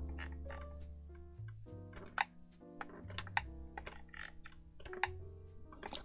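Quiet background music of held chords over bass notes that change every second or so, with a scattering of short sharp clicks.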